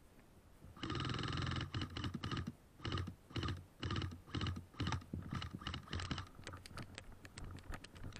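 Rustling and knocking from a body-worn action camera and gear during walking: loud uneven bursts begin about a second in, then thin out near the end into a run of quick short clicks.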